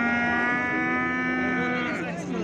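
A young bovine mooing: one long, steady call held for nearly two seconds.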